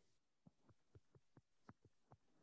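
Near silence with faint, quick ticks, about four a second, from a stylus tapping on a tablet's glass screen while handwriting.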